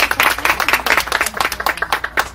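A small group of people applauding, many overlapping hand claps in an irregular patter.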